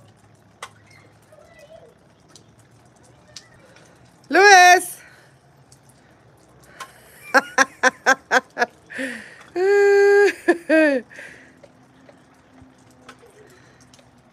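A child shrieking outdoors: one loud cry about four seconds in, then a quick run of about eight short yelps, then a longer held shriek that drops in pitch at the end.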